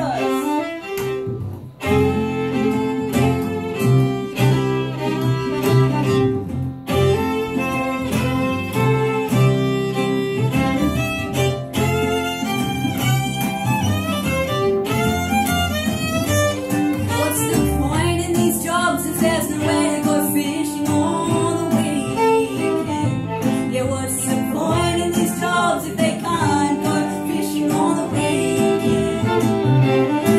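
Live folk band playing: fiddle to the fore over cittern guitar and double bass, with a brief drop in level about a second and a half in.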